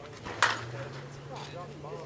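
A slowpitch softball bat hitting the ball: one sharp crack about half a second in.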